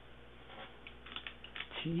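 Computer keyboard keys clicking in a quick, uneven run of keystrokes as a short name is typed in.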